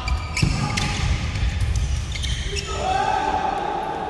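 Badminton rally on a wooden indoor court: several sharp racket strikes on the shuttlecock in the first couple of seconds, among short sneaker squeaks. A held, voice-like call runs through the last second or so.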